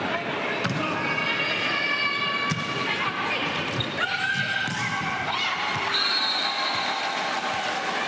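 Volleyball rally in an indoor arena: the ball is struck several times, sharp slaps heard over steady crowd noise with shouts. A long high whistle sounds about six seconds in, as the point ends.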